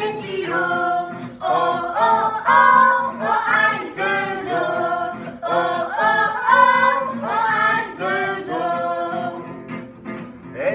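A small group of children singing a French children's song in chorus with a man, over a strummed acoustic guitar.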